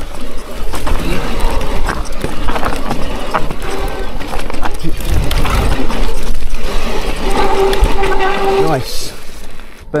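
Electric mountain bike riding over rough ground: a constant rumble with clicks and rattles from the tyres and bike. About seven seconds in, a steady squeal for about a second and a half, typical of a disc brake on worn rear pads, metal on metal.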